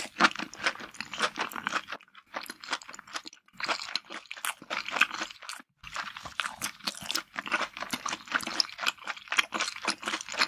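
Close-miked ASMR eating sounds of a person chewing lobster meat: a rapid, irregular run of short wet clicks, with brief pauses about two, three and a half, and nearly six seconds in.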